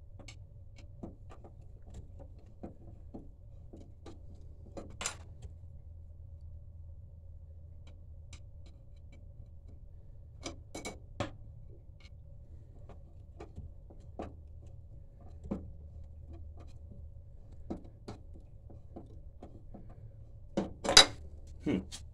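Scattered small clicks and taps of a screwdriver working a water heater's drain valve, a few of them louder, over a steady low hum with a faint thin tone.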